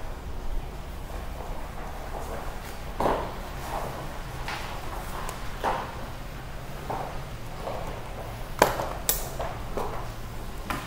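Metal sockets and tools clinking and knocking as a hand sorts through a socket set on a workbench to pick out a 12 mm socket, with a couple of sharp metallic clinks near the end.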